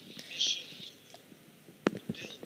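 A pause in a man's talk over a video call: a short breathy hiss of breath about half a second in, then a single small mouth click near the end.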